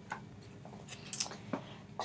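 A few light clicks and scrapes from a small whiteboard being picked up and handled, about a second in and again shortly after.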